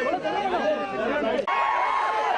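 A dense crowd: many voices talking and calling out over one another, with no single voice standing out. The sound changes abruptly about one and a half seconds in.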